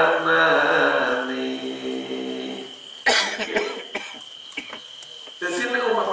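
A man's voice reciting in a drawn-out, sung tone into a microphone, the held notes stepping slowly down in pitch, then breaking off about three seconds in with a sharp cough. After a short lull the voice resumes near the end.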